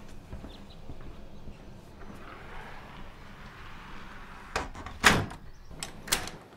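A wooden house door being shut: a few sharp knocks, the loudest about five seconds in, as the door closes and its latch catches.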